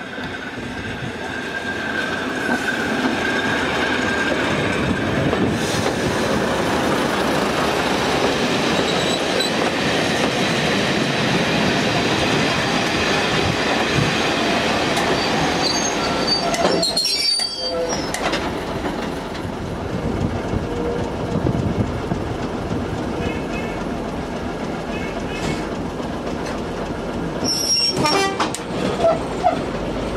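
Passenger train running, heard from an open carriage window: a steady rumble and clatter of wheels on the rails as it runs close past another train on the next track. A thin high squeal sounds in the first few seconds.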